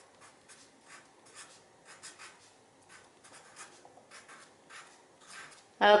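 Felt-tip marker scratching across paper in a quick run of short, faint strokes as block capital letters are written.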